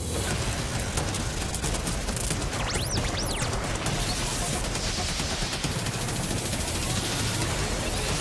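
Sound design for a TV show's title sequence: a loud, dense rush of noise with rapid crackling throughout, and a pair of swooping tones that rise and fall about three seconds in.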